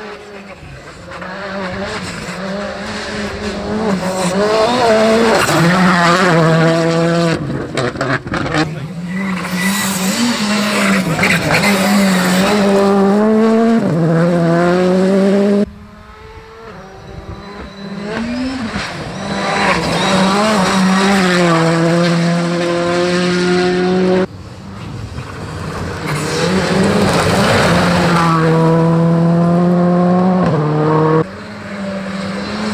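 Rally cars accelerating hard along a gravel stage, one pass after another. The engines rev up through the gears, and the pitch drops sharply at each upshift. There are three separate passes, with sudden changes at about 16 and 24 seconds.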